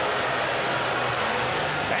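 Steady hockey-arena background noise with music playing under it.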